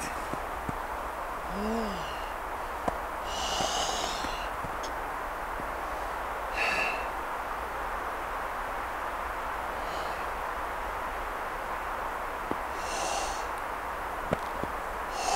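A woman's forceful exhalations through pursed lips, several hissing breaths a few seconds apart, with a short rising-then-falling hum near the start, over a steady background hiss.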